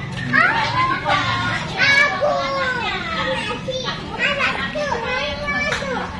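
A young child's voice vocalizing in high pitches that slide steeply up and down, with no clear words.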